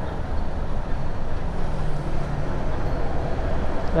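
Steady road noise from a motorcycle riding through city traffic: engine, tyres and moving air, with a large bus running close alongside. A faint low hum rises out of it for a second or two in the middle.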